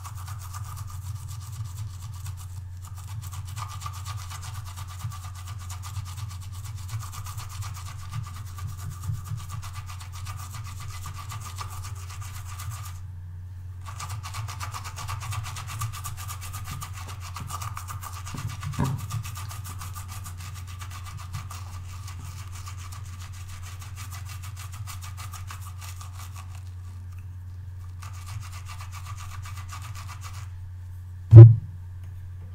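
A watercolour brush's bristles scrubbed back and forth over the ridges of a silicone brush-cleaning pad: a continuous fine rubbing, with brief pauses twice.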